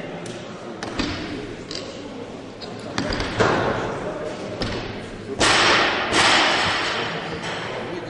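Bumper plates and collars being handled on an Olympic barbell as the bar is reloaded: scattered clanks and thuds, then a louder rasping, scraping stretch of about a second some five seconds in, echoing in a large hall.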